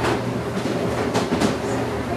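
Footsteps on carpet: a few soft scuffing steps in a walking rhythm, over a steady low hum.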